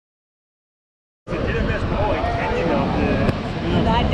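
Silence for a little over a second, then live sound cuts in suddenly: people's voices talking over a steady low rumble.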